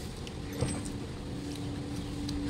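A steady motor hum over a low rumble, coming in about half a second in and growing stronger, with a short click as it starts.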